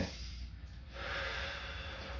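A person drawing a deep breath in, a soft airy rush that grows louder about halfway through and holds.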